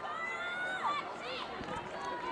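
Faint, distant voices calling and talking over low crowd noise.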